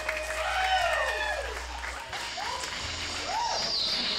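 A live band's song winding down: electric guitar tones sliding up and down over a low drone that stops about halfway through, with scattered applause.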